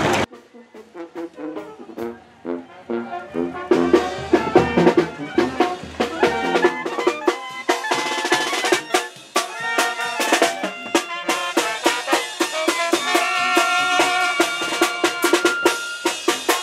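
A Mexican banda-style brass band of trumpets, sousaphone and bass drum with cymbals playing. The music is quiet at first and grows much louder about four seconds in.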